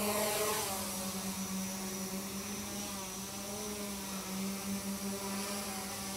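Fortis Airframes Titan tricopter's three electric motors and propellers spinning as it lifts off the grass into a low hover: a steady buzzing hum that holds one pitch.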